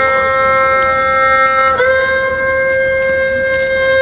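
Soundtrack music led by an erhu holding one long sustained note, the accompanying notes above it changing about two seconds in.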